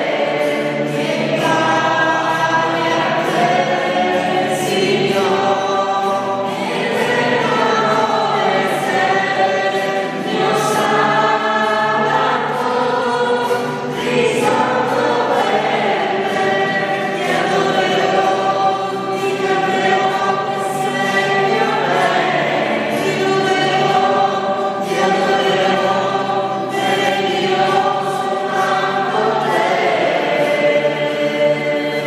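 A congregation singing a hymn of praise together, many voices at once in a steady, continuous song.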